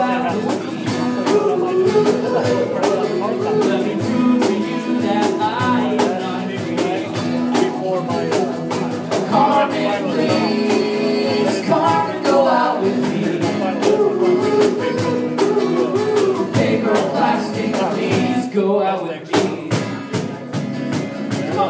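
Live band playing a song: a singer over a strummed guitar with a steady beat. Near the end the accompaniment thins out for a moment.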